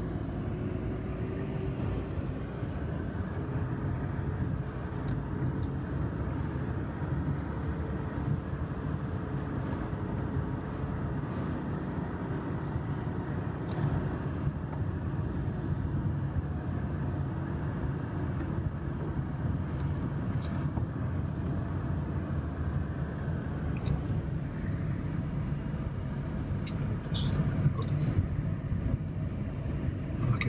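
Car driving slowly, heard from inside the cabin: a steady low engine and road rumble with a faint whine that drifts in pitch during the first half, and a few sharp ticks near the end.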